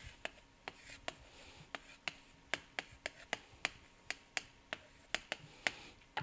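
Chalk clicking and scratching on a chalkboard as a graph is drawn: a faint, irregular run of sharp taps, about three a second.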